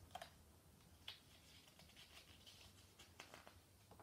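Near silence with faint light ticks and rustles from a picture book's page being handled, the page turning near the end.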